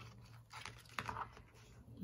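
Faint clicks and rustles of fingers handling waxed thread and a small paper piece while tying the thread around it, with the sharpest click about a second in.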